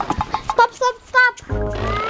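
Edited-in comedy sound effects over background music: three short warbling, whinny-like calls in the first half, then a bass beat comes in with a rising whistle glide starting near the end.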